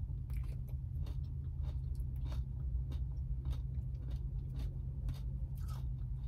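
Close-up chewing of a McFlurry with crunchy shortcake bits, a quick run of small crunches and crackles over a steady low hum.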